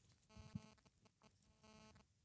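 Near silence broken by two faint, short electronic beeps, one about a third of a second in and one near the end, from a GSM trail camera being set up.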